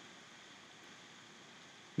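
Faint steady hiss of room tone and microphone noise, with no distinct sound events.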